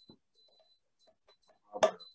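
A near-quiet pause holding a few faint, short ticks, then one brief sharp sound near the end.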